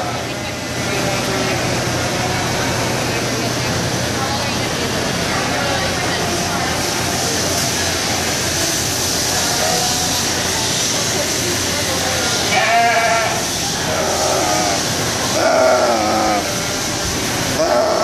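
Sheep bleating: three wavering bleats in the second half, a few seconds apart, over the steady background noise and chatter of a busy livestock barn.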